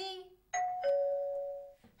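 Electric doorbell chime ringing once: a two-note ding-dong, a higher note followed by a lower one that rings on and fades, announcing a visitor at the door.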